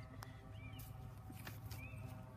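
A bird's short high chirps, repeating about once a second, over a low steady rumble, with a sharp click and a few soft knocks and rustles.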